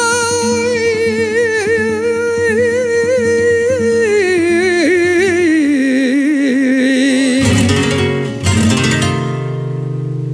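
Flamenco milonga: an elderly male cantaor holds one long sung note with vibrato, gliding down in pitch about four seconds in and ending near seven seconds. A flamenco guitar then strums chords and lets the last one ring.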